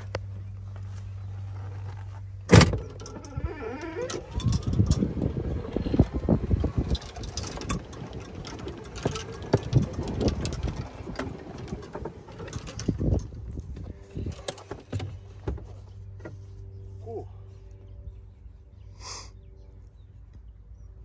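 Golf cart being driven over the course, its body rattling and jolting, with a sharp knock about two and a half seconds in; it settles to a quieter steady sound near the end.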